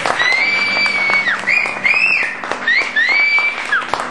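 Live audience applauding, with several high, sliding whistles over the clapping.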